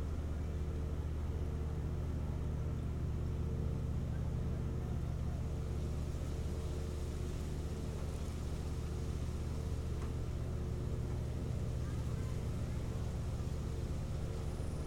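Steady low motor-like hum, unchanging in pitch and level, with a faint higher tone that comes and goes.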